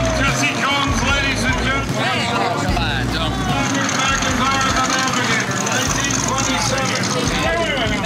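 Several people's excited voices shouting and cheering at once, close by, over a low rumble that comes and goes.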